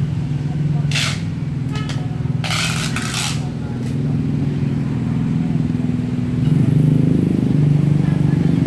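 A steady low motor hum, like an engine idling, runs throughout. Two brief scraping noises come about a second in and again around two and a half seconds in.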